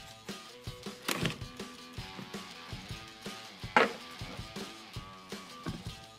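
Soft background music of plucked notes, with two sharp taps, one about a second in and a louder one just before four seconds, as a deck of tarot cards is handled.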